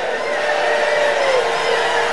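A church congregation shouting and praying aloud all at once, many voices blending into one loud wash, over a steady held note.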